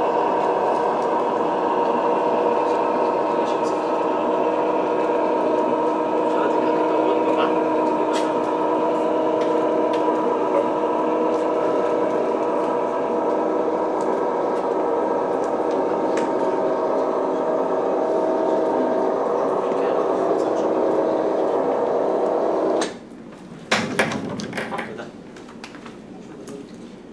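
Motorized projection screen rolling up, its electric motor running with a steady hum of several tones that cuts off suddenly about 23 seconds in as the screen reaches the top. A few sharp knocks follow near the end.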